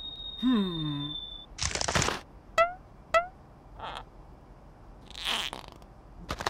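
Cartoon sound effects, with no speech. A thin high whistle-like tone dies away in the first second and a half, under a short falling grunt. A burst of noise comes about two seconds in, then two quick squeaky blips about half a second apart, and another noisy burst near the end.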